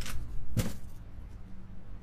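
Cardboard delivery box being pulled open by hand: a sharp crack at the start and a louder one about half a second in, then quieter handling.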